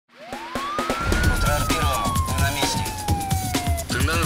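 A single siren wail that rises in pitch for about a second, then falls slowly and cuts off near the end, over a theme tune with a steady, fast drum beat.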